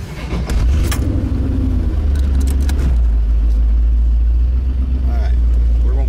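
1990 Chevrolet Corvette's V8 heard from inside the cabin. Its deep exhaust rumble picks up about half a second in as the car moves off, with a brief rising note, then runs steadily at low speed.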